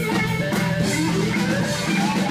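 Live band playing a song, with electric guitar strumming over a drum kit, steady and loud.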